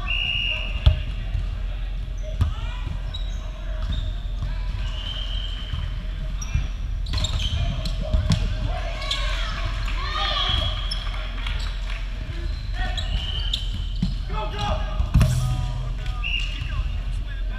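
A volleyball rally on a gym's hardwood court: the ball struck on the serve and on passes in sharp smacks, sneakers squeaking on the floor, and players calling out. A louder thud comes near the end, with a steady low hum of the hall underneath.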